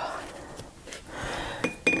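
Quiet handling of art tools, then a short, light clink with a brief ring near the end as a paintbrush is set down on a hard surface.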